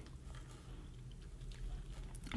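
Faint mouth sounds of eating marshmallow creme from the jar, a few soft smacks growing slightly louder near the end, over a low steady hum.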